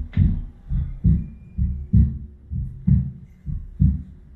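Amplified recorded heartbeat playing inside a walk-through giant heart exhibit: a steady lub-dub, a strong deep thump followed by a softer one, a little faster than one beat per second.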